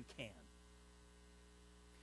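Near silence with a faint steady electrical mains hum, after a last spoken word dies away in the first half-second.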